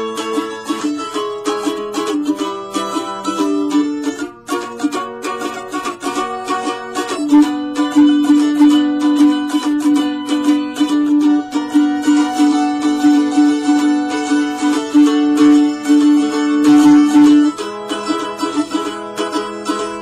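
Solo mandolin picking a verse melody, with one long note held for about ten seconds through the middle.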